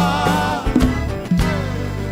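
Live Uruguayan folk music: a male voice holds a sung note with vibrato that ends about half a second in, over accordion and congas, with a few drum strikes after it.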